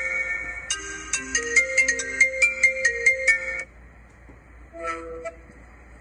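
A mobile phone ringtone: a bright synthesized melody of stepping notes over a quick ticking beat, lasting about three and a half seconds and then cutting off suddenly. A brief tone sounds near the five-second mark.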